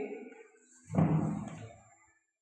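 A man's voice: the end of his sentence trails off, then he makes one short untranscribed utterance about a second in, which fades away. No other sound stands out.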